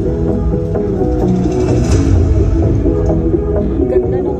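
Loud music with heavy deep bass and a stepping melody, played through a car's custom trunk-mounted subwoofer sound system.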